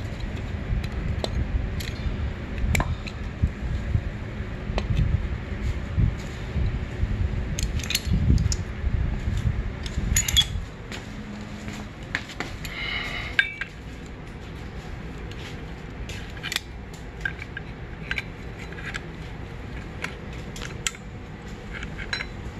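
Scattered metal clinks and clicks from a homemade clutch holding tool, C-clamp locking pliers with welded steel C-channel jaws, as it is handled and fitted against a dirt bike's clutch basket. A low rumble runs under the first half, and there is a brief scrape about halfway through.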